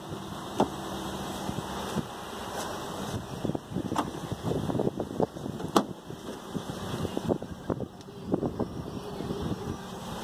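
Outdoor ambience: a steady rush of wind on the microphone, with scattered light clicks and taps throughout.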